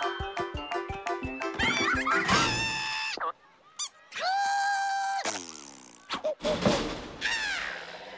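Cartoon music and sound effects: a quick plucked rhythm, then sliding whistle-like notes, a long held note about halfway through, falling slides and a few short thunks near the end.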